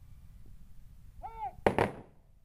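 Rifle volley fired by a guard of honour as a funeral salute: a short shouted command, then two loud shots a split second apart, near the end.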